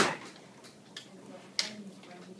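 Quiet room sound with a faint click about a second in and a sharper tap or knock just past one and a half seconds.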